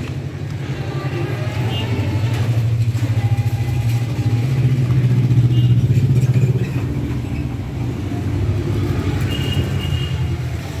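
Low, steady rumble of a motor vehicle engine running, growing louder for a few seconds in the middle and then easing off.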